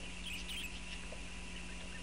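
Steady low electrical hum and hiss of the recording's background, with a few faint, short, high squeaks in the first half second.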